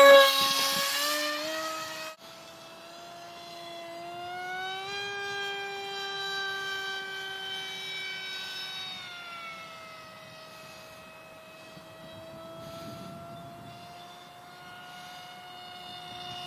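Brushless motor and 6x4 propeller of an RCPowers Eurofighter v2 foam RC jet whining at full power on a 4S battery: loud at first, dropping suddenly about two seconds in as the plane goes away, then a steady fainter whine whose pitch rises about four seconds in and falls again about nine seconds in.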